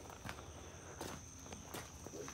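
Quiet footsteps of someone walking on gravel and grass, a few soft steps.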